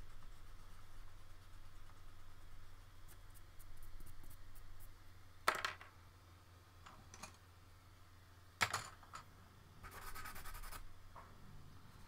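Pencil scratching on drawing paper in short strokes, with two sharp taps about halfway through and a brief rasp near the end, over a low steady hum.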